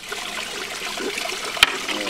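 Water trickling and splashing close by, with one sharp click about one and a half seconds in.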